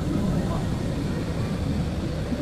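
Steady low rumble of an outdoor thrill ride in motion as it carries its seated riders upward, with faint voices.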